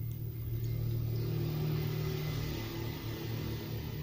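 Low, steady rumble of a motor vehicle engine running nearby, a little louder in the middle and easing off near the end.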